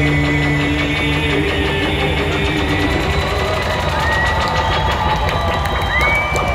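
Reggae band playing live through a loud PA in a concert hall, heard from the crowd: long held notes at several pitches over a steady bass and drum pulse, with a high note gliding upward near the end.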